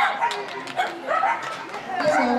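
A dog barking over people talking in the background.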